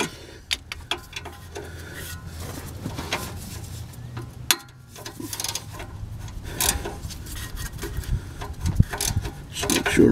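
Socket ratchet wrench working on the exhaust flange bolts under a car: rasping ratchet clicks and metal rubbing, with scattered sharp clinks of the tool against the bolts.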